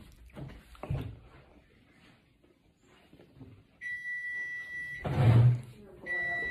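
A steady, high-pitched electronic beep, held for over a second, starts a little past the middle and is broken off near the end by a short loud noise.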